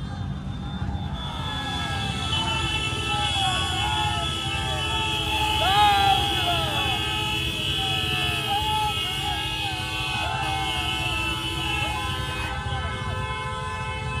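Several vehicle horns blaring in long held notes, overlapping, with many voices shouting in short rising-and-falling calls. The shouting is loudest about six seconds in.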